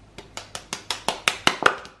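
Rapid taps on an upturned plastic tofu tub, about six a second and growing louder, knocking a block of silken tofu loose from its container.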